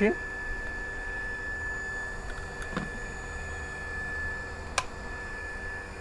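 Steady low hum with a thin, constant high-pitched whine from running electrical equipment, and one sharp click about five seconds in.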